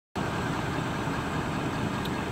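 Pickup truck engine idling steadily.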